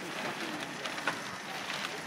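Faint background voices of people working on the boats, with a few light knocks and clicks from handling gear.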